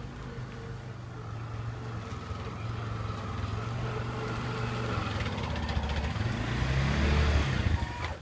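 A tuk tuk (auto-rickshaw) engine running as the three-wheeler drives closer, growing steadily louder and loudest near the end, then dropping away suddenly.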